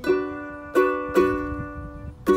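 Ukulele strummed chords between sung lines: three strums, one at the start and two more about three-quarters of a second and just over a second in, each ringing on and fading.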